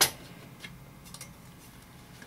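A sharp metallic click as the thin sheet-metal top cover of a DVD drive is unclipped and lifted off, followed by two faint ticks about half a second and a second later.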